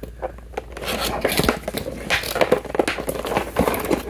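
Cardboard action-figure packaging being opened by hand: a few light clicks, then from about a second in, continuous scraping and rustling as the inner box slides against the outer cardboard.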